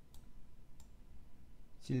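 Two faint clicks over a low steady hum in a pause between words, then speech starts again near the end.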